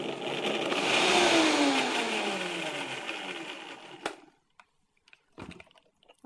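Countertop blender running on a liquid mix of vinegar and soaked dates, its motor pitch falling steadily as it winds down, then switched off with a click about four seconds in.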